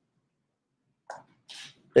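Near silence for about a second, then a short, faint mouth sound and a quick breath in just before the man speaks again.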